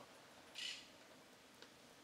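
Mostly near silence, with one brief soft scrape about half a second in: a knife blade cutting along pork ribs to free the meat from the bone.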